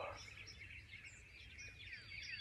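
Faint birdsong: small birds chirping here and there in quiet woods, short thin chirps over a low background hush.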